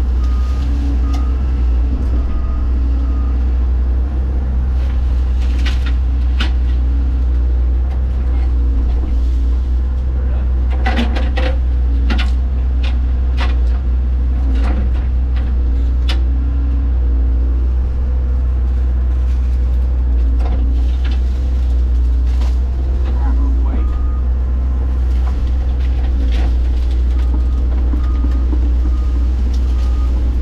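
Hyundai 140 excavator's diesel engine running steadily under load, heard from inside the cab. Branches and brush crack and snap as the arm grabs and drags them, most of all about ten to sixteen seconds in. A travel alarm beeps in short pulses at the start and again near the end.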